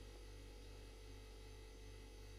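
Near silence: only a faint steady electrical hum.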